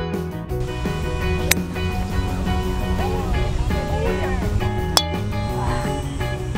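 Background music with guitar, with two sharp clicks standing out, one about a second and a half in and one near the end.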